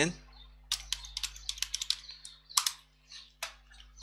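Typing on a computer keyboard: a quick run of keystrokes, the loudest about two and a half seconds in.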